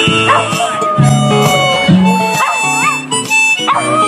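Acoustic guitar music with a dog howling along in several short rising-and-falling cries over it.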